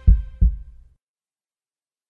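Two low heartbeat-like thumps, a double beat about half a second apart, closing a logo sting's music and dying away within a second; then silence.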